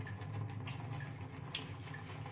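Tomato-onion masala gravy frying in a kadhai, bubbling softly with a few faint pops.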